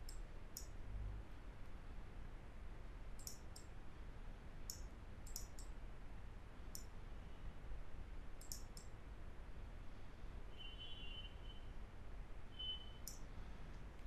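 Computer mouse buttons clicking now and then, sometimes singly and sometimes in quick pairs or triples, over a faint low hum.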